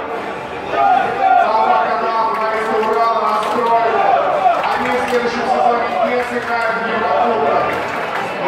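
A man speaking: a televised interview played through a TV's speaker, with the slightly roomy sound of a television heard across a room.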